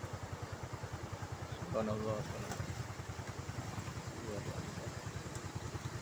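Small motorcycle engine idling close by, a steady rapid low putter. A voice says a few faint words about two seconds in and again near four and a half seconds.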